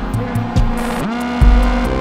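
Improvised electronic music from hardware synthesizers and a drum machine. A synth line slides up and down in pitch over a heavy low bass, with evenly spaced high hi-hat ticks keeping time.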